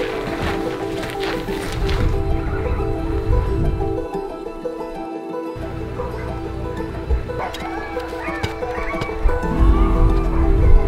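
Background music, with sled dogs yelping and howling in short rising and falling calls during the second half.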